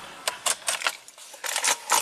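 A bunch of car keys jangling in a string of light metallic clicks, in two short flurries, as the ignition key is handled just after the engine is switched off.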